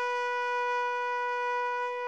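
A horn-like wind instrument holding one long, steady note, rich in overtones, as part of music.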